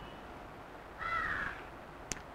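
One short bird call, slightly falling in pitch and about half a second long, comes about a second in over quiet room tone.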